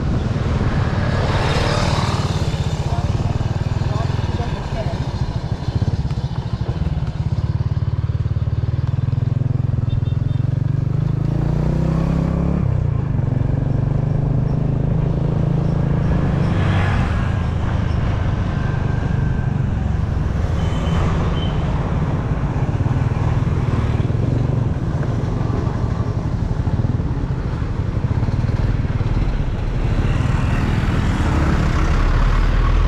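Motorcycle engine running while riding, with wind rushing over the microphone. The engine pitch climbs from about eight seconds in, then drops suddenly near twelve seconds, as at a gear change. Other vehicles pass by now and then.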